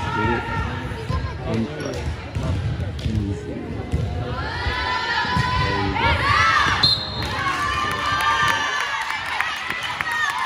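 Indoor volleyball rally: a ball is hit and players' shoes thud on the hardwood gym floor. About halfway through, a group of high-pitched girls' voices breaks into shouting and cheering as the point is won, with a short sharp high note near the end of the cheer.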